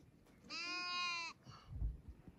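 A young black kid goat bleats once, one steady call a little under a second long, as it begs for the milk bottle. A brief low thump follows near the end.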